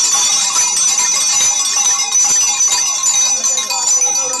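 Many small bells shaken together at once, making a loud, dense, continuous jangle of high ringing tones that holds steady throughout.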